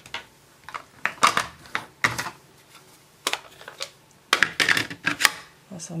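Irregular plastic clicks and knocks from a stamp ink pad case being set down and opened on a craft mat, with clusters about a second in and again between four and five seconds in.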